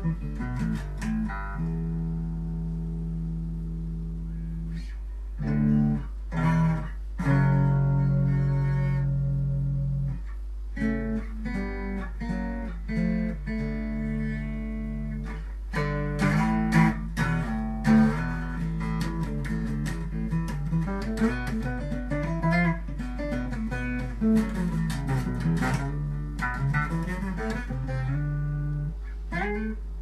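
An 8-string bass guitar played solo, each note sounding together with its paired octave string. The player holds long notes and chords, strikes a few short loud hits, then plays quicker runs that climb and fall in pitch.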